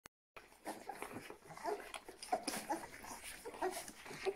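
Faint, short squeaks and whimpers from a litter of 23-day-old Rhodesian Ridgeback puppies nursing, with scattered soft clicks between them.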